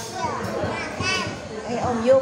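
Speech only: several people chatting over one another, with a high-pitched voice about a second in.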